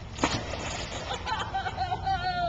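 A small child jumping into a swimming pool: one splash as he hits the water about a quarter second in, followed by sloshing. A high voice calls out near the end.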